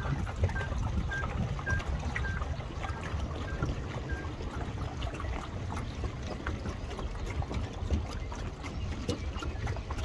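Wind rumbling on the microphone over lapping water. A faint string of short, even, high-pitched beeps, a little under two a second, stops about four seconds in.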